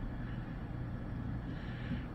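Steady low hum with a faint hiss, typical of a running desktop computer's fans.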